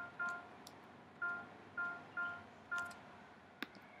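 Finale notation software sounding each note as it is entered: six short electronic tones, all at the same pitch, in an uneven rhythm. A few faint clicks fall between them.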